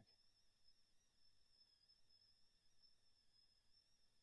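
Near silence: faint steady electrical hiss and hum of the recording.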